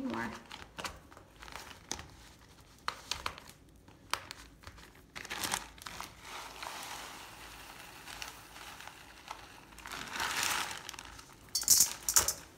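A plastic bag of uncooked rice crinkling as rice is poured from it into a sock, the grains running in with a hiss in spells, loudest about ten seconds in, and a sharp crackle of the bag near the end.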